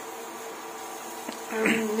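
Bajaj induction cooktop running at its 2000 W setting with a steady electrical buzz.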